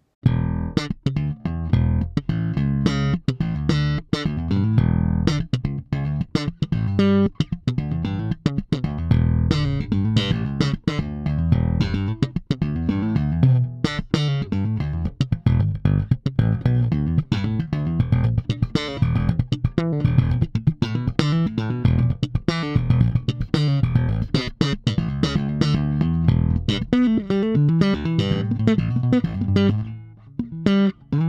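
Fender Jazz Bass fitted with Delano pickups and a Delano preamp, played continuously with many sharp, percussive note attacks. The preamp is in active mode with bass and treble boosted slightly.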